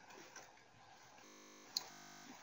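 Near silence: faint room tone between narration, with one brief click near the end.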